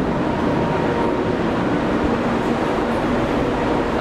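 A marine engine running: a steady drone with a faint constant whine.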